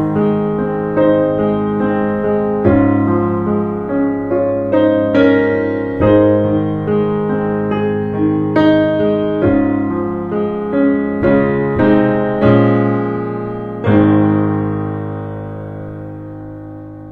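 Solo piano playing a slow melody over chords. A final chord is struck near the end and rings out, fading away.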